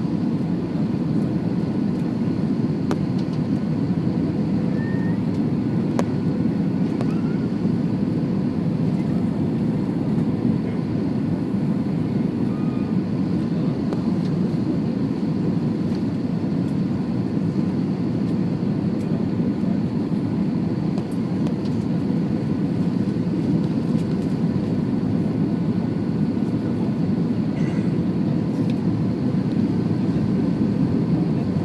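Steady cabin noise of an Airbus A321 on its landing approach, heard inside the passenger cabin: a low, even rumble of engines and rushing air with faint steady whining tones above it.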